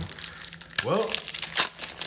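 Foil booster-pack wrapper crinkling and crackling in the hands as it is opened.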